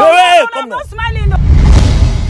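A short shouted phrase, then a deep rumbling whoosh that swells over about a second into a wide rush. It is an editing transition effect leading into a title card.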